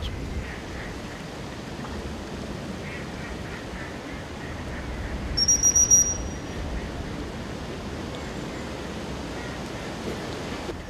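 A gundog whistle blown once in a short, high, fluttering blast about halfway through, a handler's command to a retriever swimming in the water, over a steady low wind rumble on the microphone.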